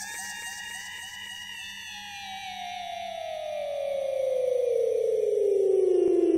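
An edited-in sound effect: one long whistle-like tone with a rapid pulse that glides steadily down in pitch and swells louder, like a falling dive.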